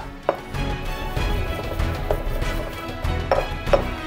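Stone pestle grinding and knocking in a stone mortar, crushing pine nuts, garlic and salt into a paste: a knock shortly after the start and two more near the end. Background music plays throughout.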